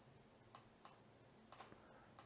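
Faint clicks of a computer mouse, four short clicks with the last two in quick succession.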